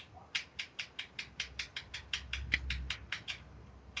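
Rapid series of light clicks, about six or seven a second, stopping a little after three seconds in.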